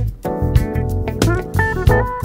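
Instrumental jazz-funk band music: an electric bass guitar line with steady low notes under sharp, regular drum hits, and short higher melodic notes above.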